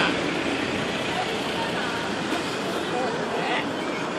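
Busy street background: steady traffic and crowd noise with faint, indistinct voices and a brief higher-pitched call or voice near the end.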